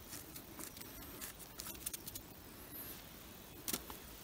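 Faint, scattered small clicks and rustles of fingers picking dirt and debris off the stem of a young orange birch bolete, against a quiet forest background.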